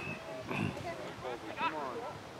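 Distant shouting voices of soccer players and sideline spectators calling out, too far off for words to be made out, with a couple of high calls about half a second in and near the end.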